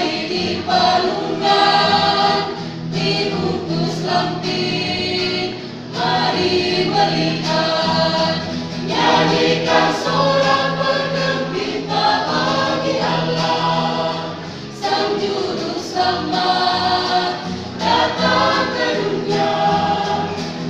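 Mixed choir-style vocal group of women and men singing a gospel song together in parts, continuous phrases with short breaths between them.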